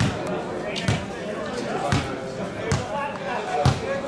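Four dull thuds about a second apart, each a short knock, over faint voices of players on the pitch.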